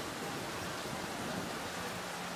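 Steady outdoor background noise: an even hiss with no distinct sounds standing out.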